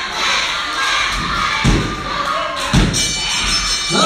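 Two heavy thuds on a wrestling ring's canvas, about a second apart, over the steady murmur of a small crowd in a large hall. A voice starts shouting right at the end.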